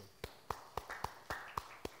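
Sparse applause from a small congregation: a few people clapping, single sharp handclaps at about four a second.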